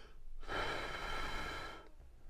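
A person blowing one long breath into the vane of a handheld GVDA GD155 digital anemometer, starting about half a second in and lasting about a second and a half.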